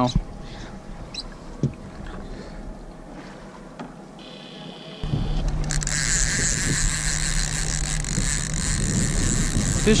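A boat under way: from about five seconds in, a steady low engine drone with a rushing hiss of wind and water over it, starting abruptly. Before that, only faint background with a few light clicks.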